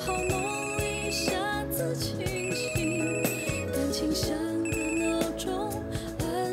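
Mobile phone ringing with an incoming call: a fast-pulsing high beep in repeated bursts, over melodic music.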